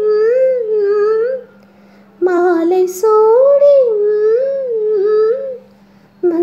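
A woman singing a slow, gliding melody with no accompaniment, in two long phrases with a short break about a second and a half in. A faint steady low hum runs underneath.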